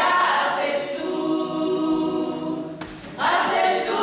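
A group of voices singing together unaccompanied, a cappella: a long held note, a short break a little before three seconds in, then a new phrase.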